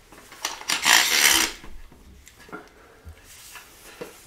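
Handling noise as a fabric shooting bag is pushed and fitted onto a rail on a wooden two-by-four. A loud scraping rub comes about a second in, then quieter fumbling with a couple of light knocks.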